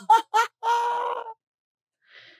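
High-pitched, voice-like calls: two quick short ones, then one held steady for under a second.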